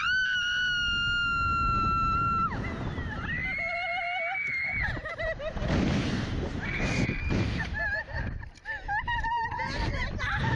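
Two women screaming on a slingshot ride launch: one long high scream for about two and a half seconds, then more screams and wavering yells. Rushing wind noise on the microphone runs underneath.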